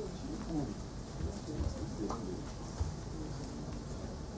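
A dove cooing several times in the background, soft low-pitched coos, with a few low thuds now and then.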